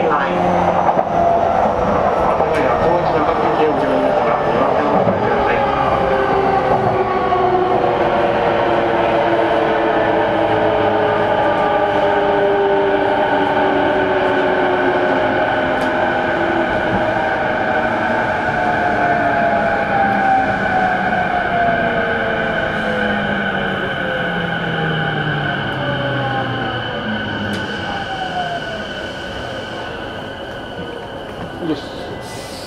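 Running noise inside an E233-series electric train's motor car: the traction motors whine in several tones that fall steadily in pitch, the sign of the train slowing down. The noise eases off toward the end.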